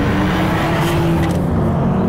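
BMW M440i xDrive's turbocharged inline-six running steadily under load on a track, its note easing slowly lower.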